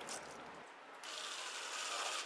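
Cordless drill running faintly, a steady whir that starts about a second in.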